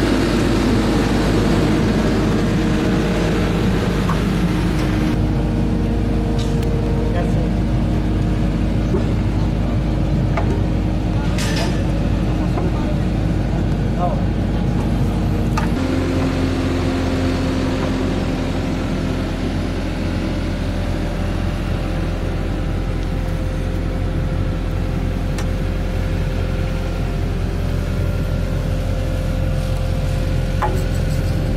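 Engine of the heavy machine lifting concrete drain pipes on a chain, running steadily, with a few sharp clanks.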